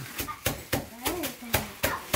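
Tissue paper crinkling as it is pulled out of a paper gift bag, half a dozen sharp, uneven crackles under voices.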